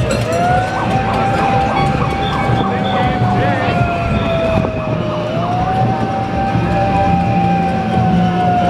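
A siren wailing: its tone rises quickly, holds, then sinks slowly for about five seconds before rising again, over a constant bed of voices and street noise.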